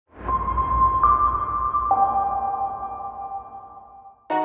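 Synthesised logo-intro sting: held electronic tones over a low rumble. The tones step up in pitch about a second in and drop lower near two seconds, then fade away.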